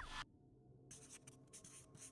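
Faint scratching strokes of a felt-tip marker writing on a surface, in two short runs in the second half. It opens with a brief, louder rushing sound that sweeps in pitch.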